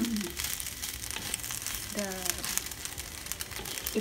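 Fusilli pasta being stir-fried in a hot pan: a steady sizzle with the quick clicks and scrapes of a spatula tossing it.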